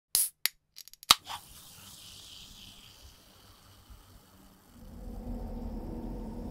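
Horror sound-design effects: a few sharp clicks and snaps in the first second, the loudest just after a second in, trailing off into a fading hiss, then a low drone swelling in from about five seconds in.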